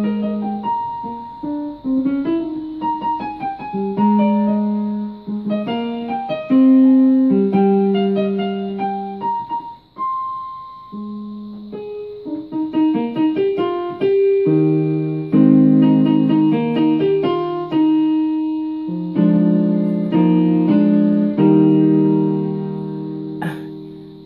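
Electronic keyboard played with a piano sound: a melody over held chords, each note ringing and fading, with fuller low chords in the second half and a brief pause about ten seconds in.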